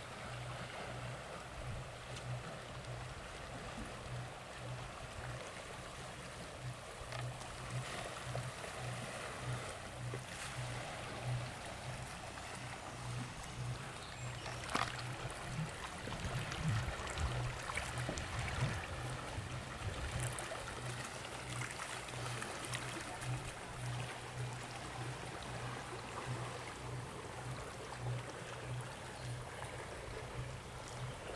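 Outdoor shore ambience: steady wind and water noise on a river, with a low, pulsing hum underneath. Gusts buffet the microphone a few times around the middle.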